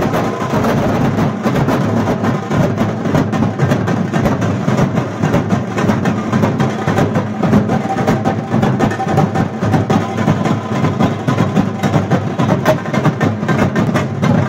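A large group of duff drums beaten together with sticks in a loud, dense, unbroken rhythm, with smaller slung drums joining in.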